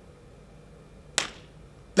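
A single sharp snap about a second in, against quiet room tone.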